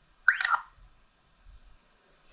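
A short electronic chirp from a touchscreen GPS navigator, once, about a third of a second in, as a button on the screen is tapped.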